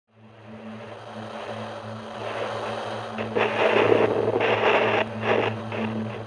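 Trailer soundtrack: a steady low hum under a hiss of noise that fades in from silence and swells, breaking into louder rough surges from about three seconds in.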